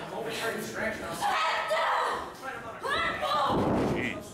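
Wrestler's body thudding onto a wrestling ring's canvas mat, with a slam near the end, among raised voices.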